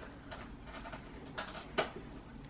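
Light clicks and knocks of shoes being handled and dropped into a plastic storage bin, a few soft taps with one sharper knock near the end, in a quiet room.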